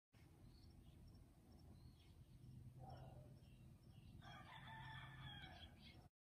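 A faint rooster crow, one drawn-out call about four seconds in, over quiet outdoor background.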